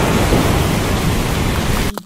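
Rainstorm ambience: a steady hiss of heavy rain over a low rumble, cutting off suddenly near the end.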